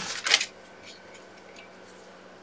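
A sheet of cardstock rustling as it is handled, in a few short scuffs in the first half-second, then quiet room tone.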